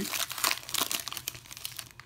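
Foil wrapper of a football trading card pack being torn open and crinkled by hand: a rapid run of crackles that thins out and fades in the last half second.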